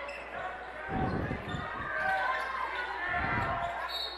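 Basketball game sounds in a large gym: a ball bounces on the hardwood court and sneakers squeak briefly, over a steady crowd murmur. Low thumps come about a second in and again near three seconds.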